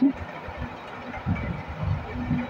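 A spatula stirring chunks of gourd and small shrimp in a pan, with irregular low scraping and knocking against the pan.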